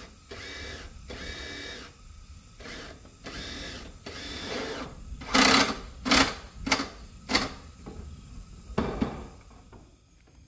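Cordless drill driving screws into corrugated metal roof sheeting: several short whirring runs whose pitch rises as the motor spins up, followed by a series of five loud sharp knocks.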